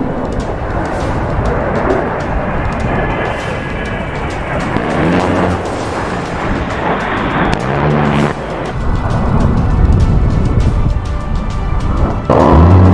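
Background music over a steady roar, the roar from an A-10 Thunderbolt II's twin turbofan engines as the jet flies low past.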